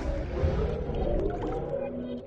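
The tail of an electronic logo sting: a low rumbling swell with short gliding tones and light clicks, fading out near the end.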